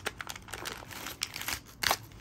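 Individually wrapped witch hazel towelette packets crinkling as they are pulled out of a mesh pouch: a quick run of short crackles, the loudest near the end.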